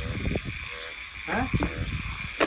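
Frogs croaking in a steady night chorus, with rustling steps through dry weeds and a brief voice about halfway through.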